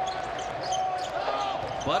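A basketball dribbled on a hardwood court, the bounces heard over steady arena crowd noise.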